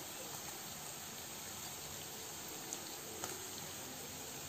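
Faint, steady sizzling of chopped onions frying in oil in a pan, with two soft ticks late on.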